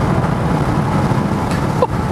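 Steady road and tyre rumble heard from inside the cabin of an electric-converted 1969 Porsche 911 on the move, with no engine sound over it. The car keeps its original, un-deadened body panels.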